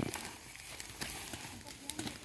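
Hand hoes chopping into soft garden soil: a string of irregular dull knocks, the heaviest right at the start.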